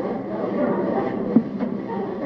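A roomful of listeners reacting at once, many voices overlapping in a continuous din with no single speaker standing out.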